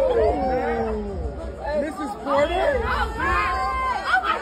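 Several people talking over one another in excited chatter, with high voices rising and falling in pitch, over a low rumble.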